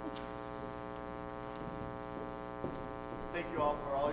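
Steady electrical mains hum with a buzzy stack of overtones, with a single click a little past halfway and a voice starting to speak near the end.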